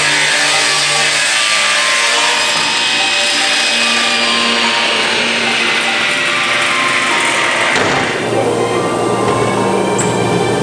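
Table saw's circular blade running through a thick wood slab, a loud steady hiss under background music. The saw noise stops abruptly about eight seconds in, and the music carries on.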